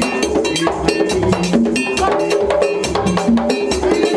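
Vodou ceremonial drumming: traditional Haitian hand drums played in a fast, dense rhythm, with a metal bell struck over them.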